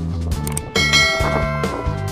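A bright bell-like ding from a subscribe-button sound effect rings out about three-quarters of a second in and fades within about a second. It plays over background music with a steady beat.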